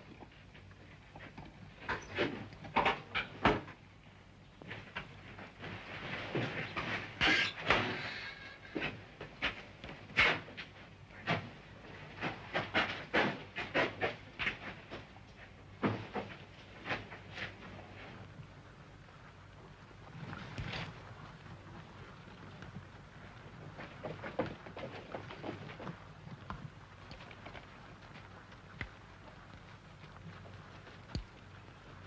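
Irregular sharp knocks, clicks and clatters of a wooden cabinet and its drawers being rummaged through and a paper bag being filled, thick for the first half and sparser later.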